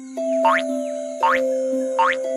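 Cartoon 'boing' spring sound effects for a hopping rabbit, quick upward-sliding twangs heard twice, with a third just at the end. Under them is the instrumental intro of a children's song, with a steady held low note.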